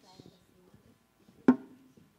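A single loud, sharp thump about one and a half seconds in, with faint scattered knocks and rustling before it.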